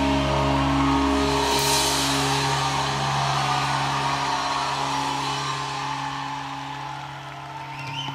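A live rock band's final chord held and slowly fading: sustained bass and electric guitar notes under ringing cymbals, with a cymbal crash about a second and a half in.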